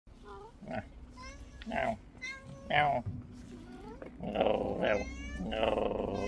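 Domestic tabby cat meowing repeatedly: short calls about once a second, then longer, louder meows near the end.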